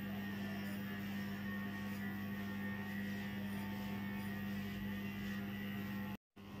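Electric pet clipper running steadily near the dog's face, a constant low hum.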